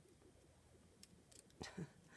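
Near silence, broken by a faint sharp click about halfway through and a few softer ticks as thin metal file-folder hanger rods are handled against each other, then a brief voice sound near the end.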